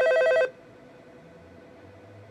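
Telephone ringing with a rapid, trilling bell ring that cuts off suddenly about half a second in, leaving only a faint trace of its tone.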